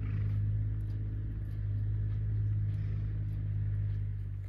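A motor running steadily with an even, low hum.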